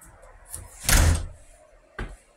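A single short thump with a brief rush of noise about a second in.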